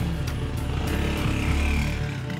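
A vehicle engine's low rumble under background music with held tones; the rumble drops away at the end.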